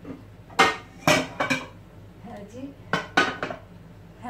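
Metal frying pans clanking and clattering against each other and the stovetop as one is picked up and handled, in several sharp clusters of knocks.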